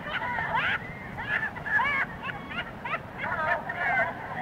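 A busload of passengers laughing at a joke's punchline, many voices at once in short overlapping bursts, over the low steady rumble of the moving bus, as heard on a lap-held cassette recording.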